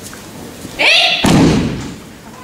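A sharp shouted kiai, "ei!", then a heavy thud as a body slams down onto the tatami mat in a breakfall. The thud is the loudest sound and follows the shout almost at once.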